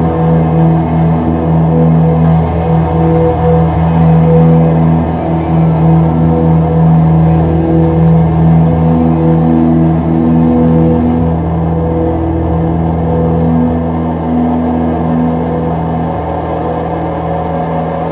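Ambient electric guitar drone through effects: a low chord of several notes held steady, easing slightly in level in the second half.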